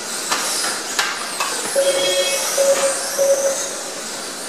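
Kyosho Mini-Z 1:28-scale electric RC cars racing, their motors whining in rising and falling sweeps over tyre hiss, with a sharp click about a second in. In the second half a steady tone sounds three times.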